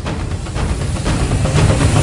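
Intro sound effect: a rushing noise over a deep rumble, building steadily louder as a swell.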